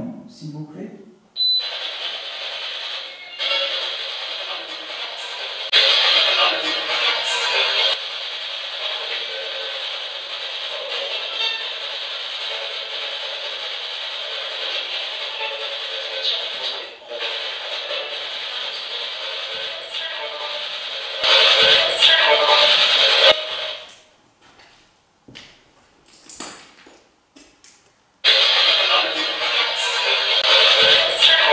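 Spirit box sweeping through radio stations: a continuous stream of static and chopped snatches of broadcast speech and music. It cuts out for a few seconds near the end, then starts again.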